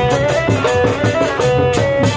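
Sundanese kuda renggong street band playing loudly: drums and a gong keep a steady, repeating beat under a melody with sliding notes.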